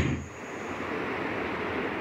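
A sharp click, then a steady rushing noise that slowly grows louder. An insect's high, steady trill carries on faintly through the first second and then stops.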